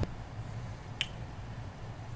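A single computer mouse click about a second in, over faint steady hiss. A short click at the very start marks where the paused screen recording resumes.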